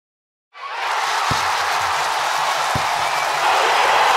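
Intro sound effect of a cheering, applauding crowd, starting about half a second in, with two deep booms about a second and a half apart.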